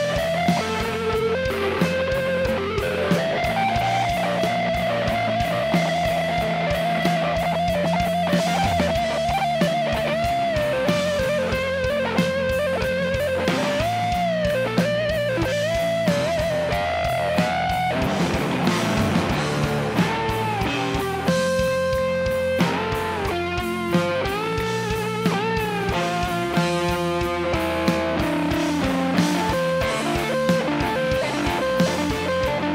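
Rock band playing an instrumental passage live: an electric guitar plays a lead line of held, bending notes with vibrato over bass guitar and drum kit. Past the middle the guitar moves to quicker, choppier notes.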